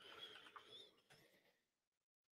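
Near silence, with a few faint, brief sounds in the first second; the audio then drops to complete silence shortly before the end.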